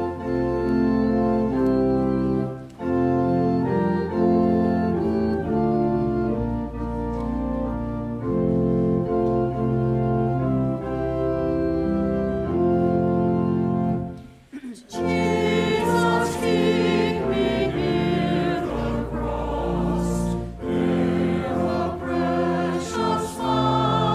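Church organ playing the introduction of a hymn in held chords. After a short break about two-thirds of the way through, the choir and congregation begin singing the hymn over the organ.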